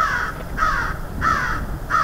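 American crow cawing four times in an even series, about one harsh caw every 0.6 seconds.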